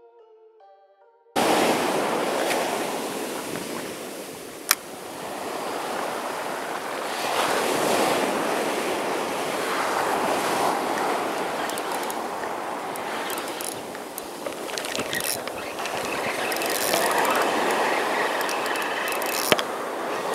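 Soft music cuts off about a second in, giving way to surf breaking and washing up a sandy beach, swelling and ebbing, with some wind on the microphone. There is a sharp click about five seconds in, and scattered clicks and knocks of handling noise in the second half.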